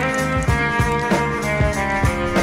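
Background music: an instrumental track with a steady drum beat.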